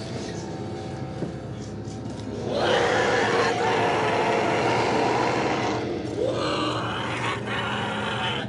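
A woman's harsh, guttural scream. It starts about two and a half seconds in and holds for around three seconds, then a second, shorter cry follows.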